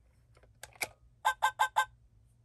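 Sega Poo Chi robot dog toy's speaker giving a few short electronic blips, then four quick identical beeps in a row in the second half, after its head button is pressed.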